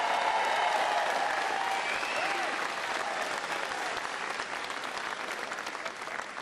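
Large crowd applauding, slowly dying down toward the end.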